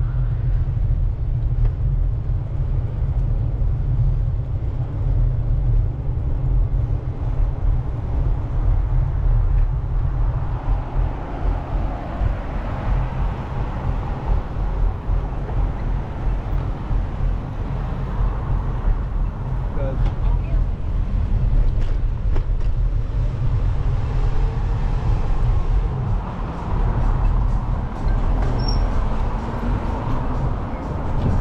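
Steady low rumble of wind on the microphone of a camera riding on a moving bicycle, with road traffic passing alongside.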